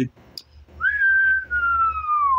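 A man whistling one long note that begins about a second in and slides slowly down in pitch.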